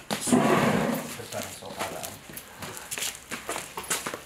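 Rubber knee pads and sandals scuffing and knocking on a floor as a person moves along on his knees. There is a louder scrape in the first second, then scattered lighter scuffs and taps.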